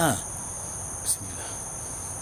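A steady, high-pitched chorus of crickets trilling without a break, with one short click about a second in.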